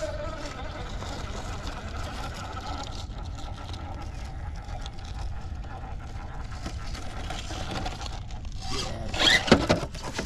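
Redcat Ascent RC rock crawler's electric motor and geared drivetrain whining steadily under heavy throttle as its tires scrabble up a rock face. Near the end the truck clatters as it tips over on the rock.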